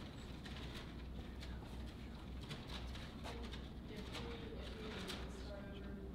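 Faint, indistinct speech from someone away from the microphone in a lecture room, over a steady low hum. The voice becomes clearer about halfway through.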